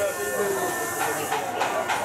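Street ambience in a busy market lane: people's voices over a steady hiss of street noise, with a thin steady high tone for about the first second and a half.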